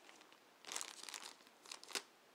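Clear plastic bag around a USB cable crinkling in short rustles as it is handled and opened, with a sharp click near the end.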